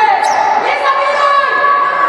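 Sneakers squeaking on a wooden sports-hall floor during a youth basketball game, several long squeals overlapping, with voices and the ball bouncing.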